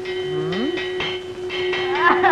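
Film soundtrack effect: a steady held tone with a low, moo-like sound sliding upward about half a second in.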